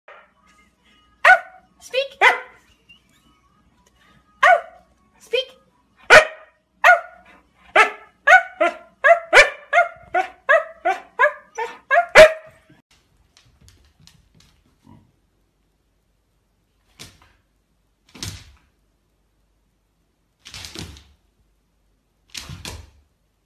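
A husky barking in a run of short, pitched barks, a few at first and then quickening to two or three a second, stopping about twelve seconds in.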